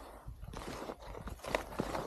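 Footsteps in snow, a step about every half second.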